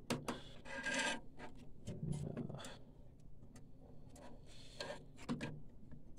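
Plastic and metal parts rubbing and scraping in short, irregular bursts as the printer's pump and capping-station unit is pressed and worked into its place in the chassis by hand.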